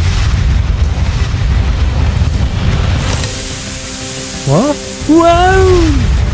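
A cartoon fiery-blast sound effect, with music: a low rumble that gives way about halfway to a hissing rush. Near the end come a short rising whoop and then a longer arching one.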